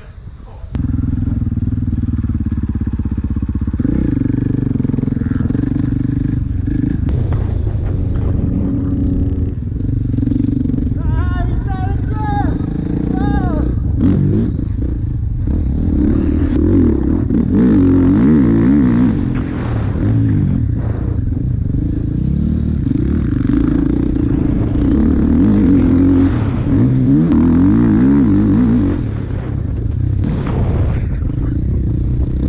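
Dirt bike engine being ridden on a motocross track, heard from on board. It comes up loud about a second in, and from then on the revs keep rising and falling with the throttle.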